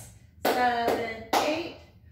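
A woman counting the beat aloud in two drawn-out, sing-song counts about a second apart, each starting with a sharp attack.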